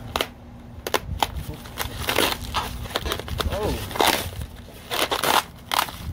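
Knife blade cutting through packing tape and a styrofoam packing insert, with foam pieces breaking and pulled loose. There are a few sharp clicks in the first second or so, then several bursts of scraping and tearing, each about half a second long.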